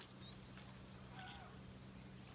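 Near silence: faint outdoor ambience with a steady low hum, and a brief faint call about a second in.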